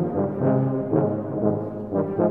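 Low brass ensemble of tubas and euphoniums playing a march in parts, with sustained low notes and accented attacks about every half second.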